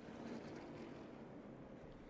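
Faint, steady sound of NASCAR stock cars running at speed on the TV broadcast's track audio.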